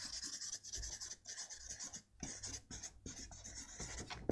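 Marker pen writing on flip chart paper: faint scratchy strokes coming in short runs, with brief pauses between letters and words.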